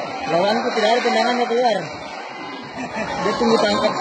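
Several people's voices calling out and chattering, the words unclear.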